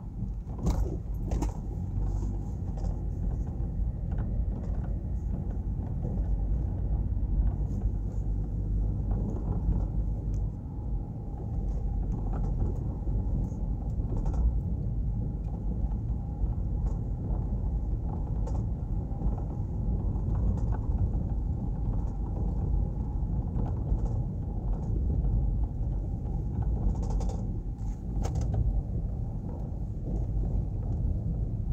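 Car driving at low speed, its engine and tyre rumble heard from inside the cabin as a steady low drone, with a few faint clicks near the start and near the end.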